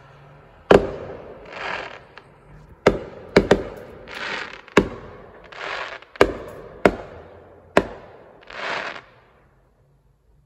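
Fireworks going off: about eight sharp bangs at uneven intervals, two in quick succession about three and a half seconds in, with short bursts of hiss between them.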